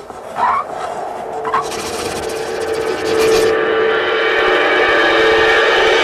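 Electronic sound effects of a video distributor's logo ident. A few short chirping blips come in the first second and a half, then a buzzing rasp runs from about two seconds to three and a half. A held electronic tone swells louder about three seconds in and carries on.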